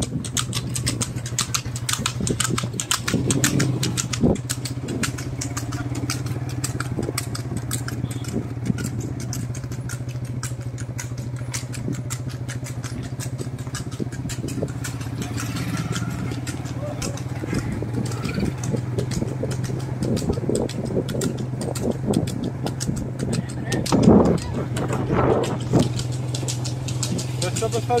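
Motorcycle engine running at a steady speed while riding, with a dense crackle of clicks and rattle over it. A brief loud voice breaks in near the end.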